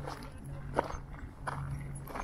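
Footsteps on a gravel and dirt path, three steps about 0.7 seconds apart, over a low steady hum.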